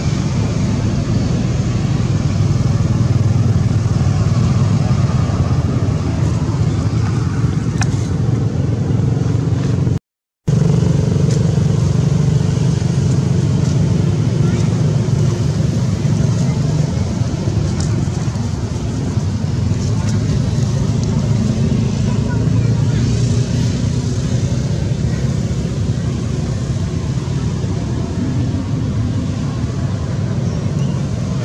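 Steady low rumble of vehicle engines, cutting out briefly about ten seconds in.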